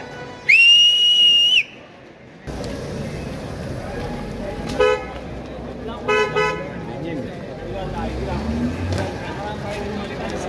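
A loud, high whistle held for about a second, then a car horn: one short toot about five seconds in and two quick toots a second later, over crowd chatter.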